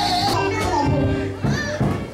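Live gospel music: a female vocal group singing through microphones over electric guitar and band. A phrase trails off with a short dip in loudness shortly before the end.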